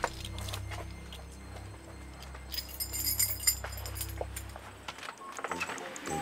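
A bunch of keys jangling in a hand, with small clinks throughout and the busiest jingling about two and a half to three and a half seconds in.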